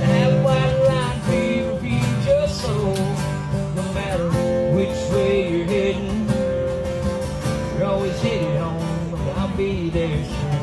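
Acoustic guitar strummed in a country song, with a man's singing voice over it.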